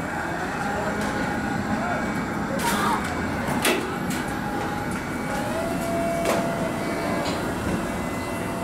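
Worksite noise during a crane lift of a wrapped platform-door unit: a steady low rumble with a few sharp metallic knocks and clanks, the loudest about halfway through.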